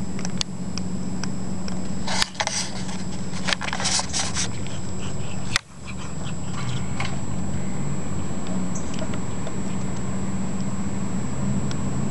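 A cat chewing on a freshly killed bird, with crackling, crunching bursts between about two and five seconds in, over a steady low mechanical hum.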